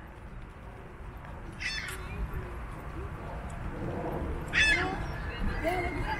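Two short, harsh bird calls about three seconds apart, the second louder, over a steady low outdoor rumble.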